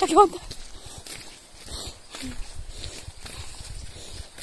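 Wind buffeting a handheld phone's microphone in uneven low rumbling gusts, with a few faint clicks of handling. A woman's voice is heard briefly at the very start.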